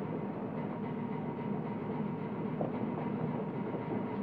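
Steady low rumble of electric streetcars in a streetcar barn.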